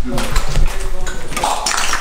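People talking briefly in an indoor space, with scattered knocks and clicks.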